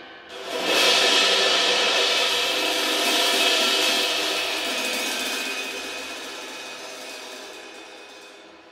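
Drum-kit cymbal swelling up about half a second in to a loud crash wash, then ringing on and slowly fading out.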